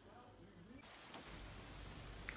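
Near silence: faint room tone with a low hiss that grows slightly from about a second in.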